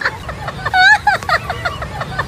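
Raised voices shouting excitedly in a heated scuffle, over a steady low rumble.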